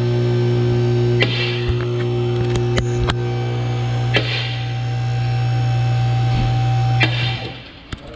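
A loud, steady electrical hum with a few overtones, cutting off shortly before the end, with a few sharp knocks and clatters over it.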